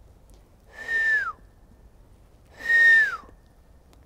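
A person whistling twice, two short notes a couple of seconds apart, each held steady and then dropping in pitch at its end.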